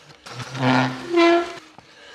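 Two short horn-like blasts, the first lower and breathy, the second a little higher and louder.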